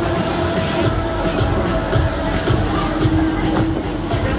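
Huss Break Dance fairground ride running, the noise of its turning platform and spinning gondolas mixed with loud ride music.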